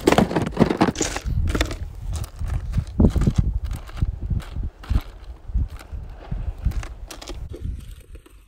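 Handling noise on a handheld phone's microphone: irregular knocks and crackles, about one or two a second, over a low rumble.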